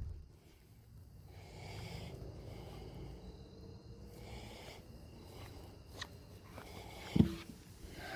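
Faint rustling and handling noise with a person breathing through the nose. One short, dull knock a little past seven seconds, with a smaller click just before it.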